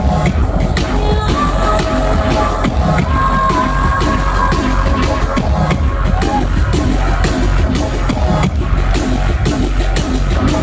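Drum and bass DJ set played loud over a club sound system: fast, busy breakbeat drums over a constant heavy sub-bass, with a few held synth tones above.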